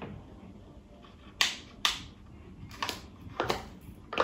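Scissors cutting into a thin plastic cup, four sharp snips as the blades bite through the plastic, starting about a second and a half in.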